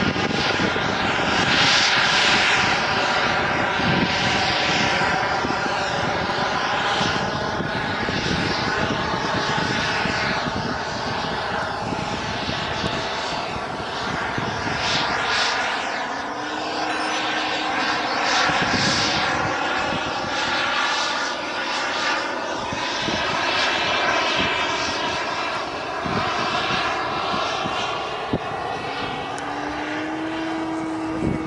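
Model jet aircraft flying overhead, its engine giving a steady high whine that wavers slowly in pitch as it moves across the sky.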